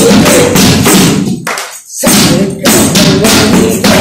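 Hand frame drum (dafli) beaten in a quick, steady rhythm within Saraiki folk music, with pitched accompaniment underneath. The music drops out briefly about a second and a half in, then resumes.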